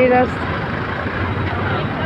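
Steady motor-traffic noise on a busy city road: engines of auto-rickshaws and trucks running and tyres on the road, with no single vehicle standing out.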